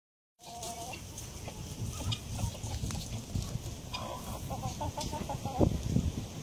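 Chickens clucking, with a quick run of short clucks about four seconds in, over a steady low background rumble.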